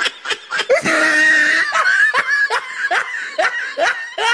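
Hearty laughter in quick repeated ha-ha pulses, stretching into one longer held laugh about a second in, then back to short pulses.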